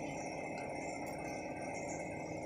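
Steady low background hiss with no distinct events: room tone picked up by a phone's microphone.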